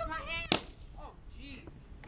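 A latex party balloon popping once, sharply, about half a second in, with brief voices before and after it.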